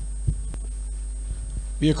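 Steady low hum in the recording during a pause in the speech. A man's voice comes in near the end.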